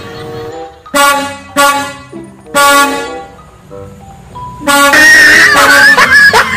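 Truck air horn sound effect honking three times, each a loud pitched blast of under a second, about a second apart. About five seconds in, a louder, continuous, wavering tune starts.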